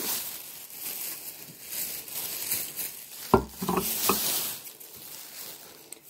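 Thin plastic grocery bags rustling and crinkling as they are rummaged through, with a sharp knock about three seconds in.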